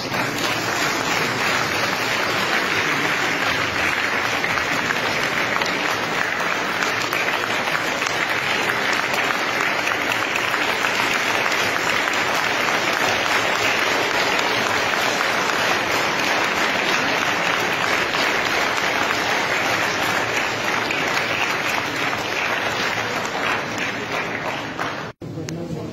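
Steady applause: many people clapping continuously.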